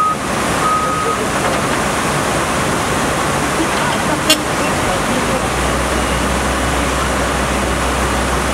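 Rushing floodwater of a swollen river as a steady noise, joined about five and a half seconds in by the low rumble of an articulated dump truck's diesel engine as its loaded bed tips up. A single sharp click sounds just after four seconds.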